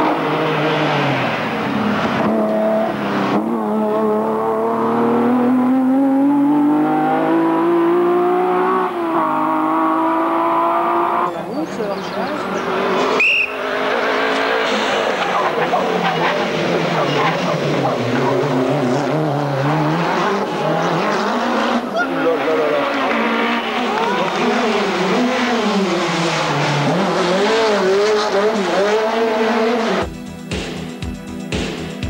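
Rally car engines at full throttle on a tarmac stage, revving hard up through the gears and backing off for corners as the cars pass one after another. A short high-pitched squeal comes about 13 seconds in.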